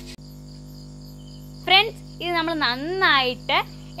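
Crickets chirping steadily in the background, a rapid high pulsing, with a low steady hum under it. A voice starts speaking over them a little before halfway and is louder than the crickets.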